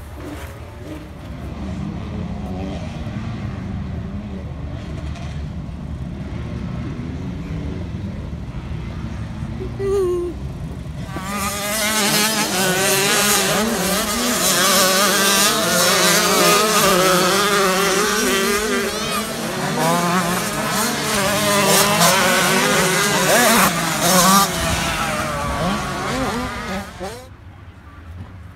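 Several motocross bikes racing on a dirt track, their engines revving up and down and overlapping, loudest from about a third of the way in until shortly before the end. Before that there is a steadier, quieter engine drone.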